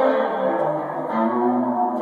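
Custom electric guitar riffing through an amplifier, a run of notes changing every fraction of a second.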